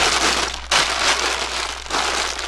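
A feed bag being handled and crumpled by hand: a steady crinkling rustle with a brief break just over half a second in.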